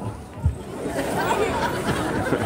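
Audience chatter: many voices talking at once, with a single low thump about half a second in.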